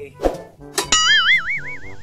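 Cartoon 'boing' sound effect: a sharp twang just before a second in, then a wobbling tone that wavers up and down for about a second, after a short thump near the start.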